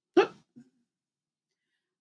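A woman's single brief wordless vocal sound, a short catch of the voice, about a fifth of a second in.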